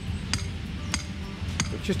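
Hammer blows driving a steel anchor peg into the ground for a bouncy castle: three sharp strikes about 0.6 s apart, each with a short metallic clink.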